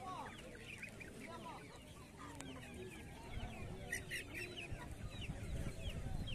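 Chickens clucking, with many short high calls overlapping one another, and a low rumble coming in after about three seconds.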